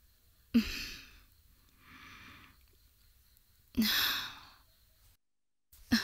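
A woman's heavy, breathy sighs: two loud ones about three seconds apart with a softer one between, each opening with a short voiced catch in the throat.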